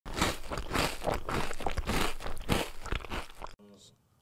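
Intro sound effect of crunching, like teeth biting into crunchy food: a dense run of crackly crunches that cuts off suddenly about three and a half seconds in.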